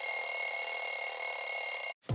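Sound effect of several steady high-pitched tones sounding together for about two seconds, then cutting off suddenly.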